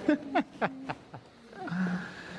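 Newborn baby crying: four or five short cries with sharply sliding pitch in the first second, then quieter.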